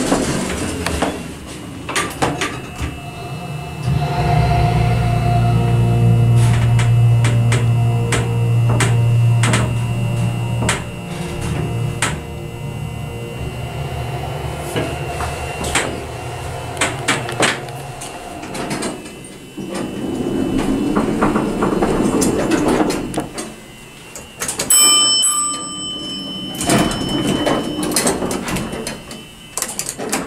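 Amtech hydraulic elevator car in travel: a low steady hum with overtones runs for several seconds and then dies away, with scattered clicks and knocks. Near the end the elevator's bell dings once with a clear ringing tone, around the doors sliding.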